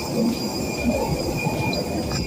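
A parked jet airliner whining steadily on the apron, with several high steady tones over a low rumble.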